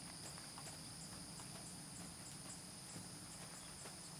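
Faint steady chirring of insects, with a few soft, muffled hoofbeats of a horse moving on sand.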